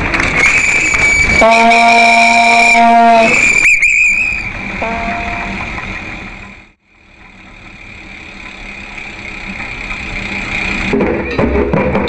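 A horn blown in long, steady held blasts with a shrill high tone alongside. The sound then fades away and slowly builds again, and drumming comes in near the end.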